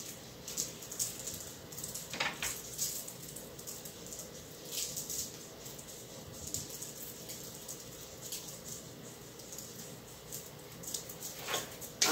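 Sea salt being sprinkled by hand over oiled chickpea crackers on parchment paper: faint, irregular light ticks of falling grains and fingers, over a faint steady hum.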